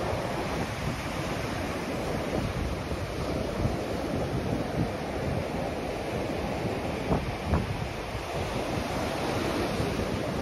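Ocean surf breaking and washing up a sandy beach, a steady rush, with wind buffeting the microphone and a couple of brief louder gusts about seven seconds in.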